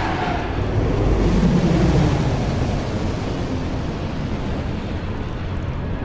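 Science-fiction sound effect of a small starship being pulled in by a tractor beam: a deep, steady rumble that swells about a second in and then settles. A short falling tone sounds at the very start.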